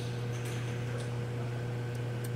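Steady low hum of running equipment, with a faint steady higher tone above it.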